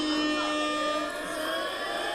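A man's laughter trailing into one long held vocal note for about the first second, then several overlapping voices from the audience.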